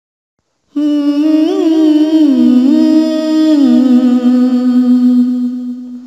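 A man's voice humming a wordless, ornamented melody with no accompaniment, starting about a second in, with quick wavering turns before settling into one long held note that fades near the end.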